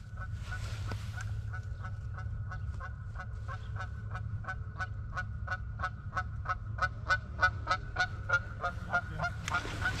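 Canada geese honking: a steady run of short honks, about three a second, growing louder near the end as the flock comes in close.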